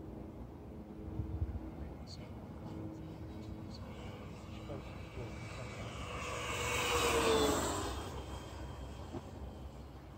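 Radio-controlled model of a twin-engine F7F Tigercat making a low fly-by pass. Its motor and propeller sound swells to a peak about seven seconds in, drops in pitch as it goes by, then fades.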